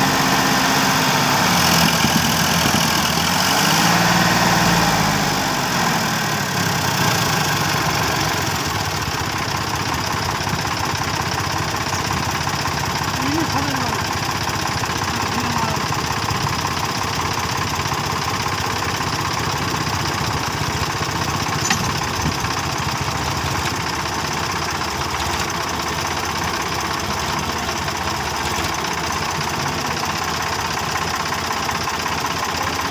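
Sonalika DI-50 tractor's diesel engine working under load as it hauls a loaded trolley through mud: it revs up and drops back about two to six seconds in, then runs steadily.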